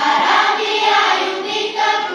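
Children's choir singing.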